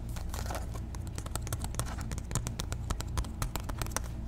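Fingernails tapping and scratching on a glittery police-style cap, an irregular run of light, crisp taps that grows denser from about a second in.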